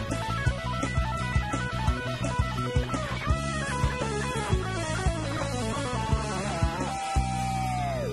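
Live pop-rock band playing an instrumental passage: electric guitar lines over bass and a steady drum beat of about two strokes a second. Near the end a long held note bends downward.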